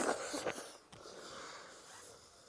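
Close-miked wet slurp as a handful of soaked panta rice is taken into the mouth from the fingers, followed by steady breathy noise while chewing.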